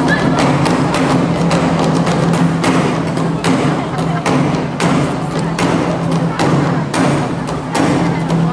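Nanta drum ensemble playing: a rapid rhythm of sharp strikes on barrel drums and large painted drums, with steady low notes sounding underneath.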